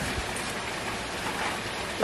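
A steady, even hiss of background noise, like rain or running water, with no distinct knocks or handling sounds standing out.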